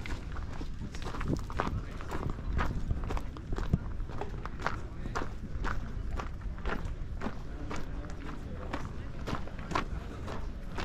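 Footsteps on a gravel path, about two steps a second, over a steady low rumble.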